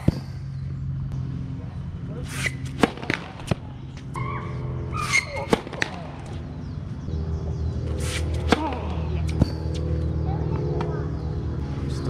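Tennis balls struck by rackets in rallies: sharp pops at irregular intervals, some coming in quick succession, with a short shout from a player around the middle.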